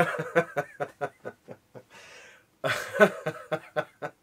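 A man laughing, lost for words: a quick run of short breathy laughs, then a louder burst of laughter about three seconds in.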